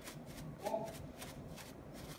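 A small hand brush scrubbing against a rough limestone cave wall in short, repeated strokes, about three or four a second.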